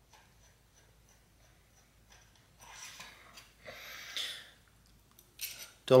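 Faint metallic scraping and rattling of a bicycle quick-release skewer being unscrewed and drawn out of the rear hub axle, in two short bouts about halfway through.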